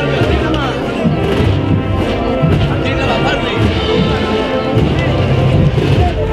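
Spanish town wind band (banda de música) playing a Holy Week processional march, with people talking over it.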